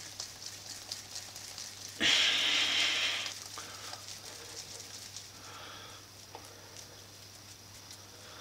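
Hands rubbing together to rub sticky potato-dumpling dough off the palms and fingers: a loud rubbing burst lasting about a second, starting about two seconds in, then faint crackling.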